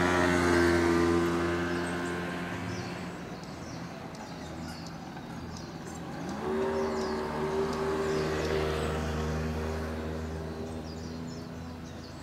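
Two motor scooters passing one after the other. The first scooter's small engine holds a steady note that fades over the first few seconds. About six seconds in, the second scooter's engine rises in pitch as it pulls away, holds a steady note, then fades near the end.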